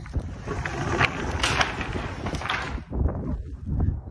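Roll-up rear door of a Unicell cargo box on a box truck being pulled up by hand: a rattling, rolling clatter with many small clicks for about three seconds, easing off as the door reaches the top.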